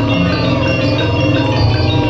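Loud jaranan gamelan music accompanying barongan dancers: tuned metal gong-chimes and bells ring in a steady, quick, repeating rhythm.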